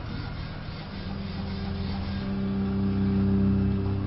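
A low, steady drone hum over a faint hiss, swelling gradually louder toward the end.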